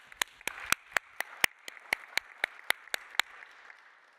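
Applause: one person clapping close to the microphone, sharp even claps about four a second, over soft clapping from an audience. The near claps stop shortly before the end.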